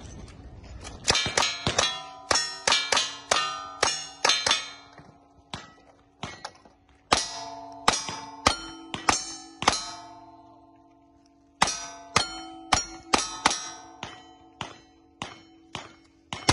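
Rapid gunshots at steel cowboy-action targets, each shot followed by the ringing of a hit steel plate. The shots come in three quick strings with short pauses between.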